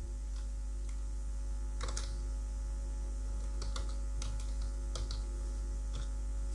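Computer keyboard being typed on: a short run of separate keystrokes, irregularly spaced, entering a short text label. A steady low electrical hum runs underneath.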